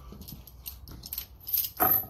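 Steel chain clinking as it is handled: light rattles of the links, then louder metallic clinks with a short ring near the end.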